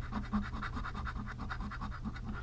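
Rapid back-and-forth scratching of a scratch-off lottery ticket, the silver coating being rubbed off the play area in quick, even strokes, several a second.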